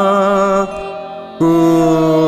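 Male voice singing Rabindrasangeet, holding a long steady note. It breaks off about two-thirds of a second in and comes back on a fresh held note just before a second and a half.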